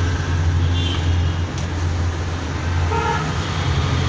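Steady low rumble of road traffic, with a couple of faint short horn toots about a second in and near the end.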